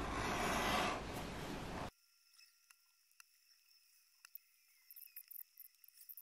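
Leather edge beveler shaving the edges of vegetable-tanned leather coasters: a steady scraping hiss that cuts off after about two seconds, followed by faint, scattered light ticks.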